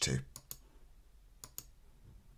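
Computer mouse clicking: two quick pairs of clicks about a second apart, made while selecting contacts in a list.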